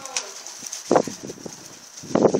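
Rottweiler gnawing at a raw pork shoulder: a cluster of short, wet biting and tearing sounds about a second in.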